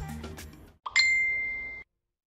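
A single bright bell-like "ding" chime, an edited sound effect, strikes about a second in and rings on one steady tone before cutting off abruptly. Before it, background music fades out.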